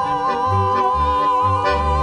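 Klezmer band playing the closing bars of a Yiddish song: a male voice holds a long high note with vibrato over accordion, clarinet and a moving double-bass line.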